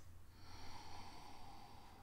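A man faintly sniffing beer in a glass held to his nose: one long, slow breath in to take in its aroma.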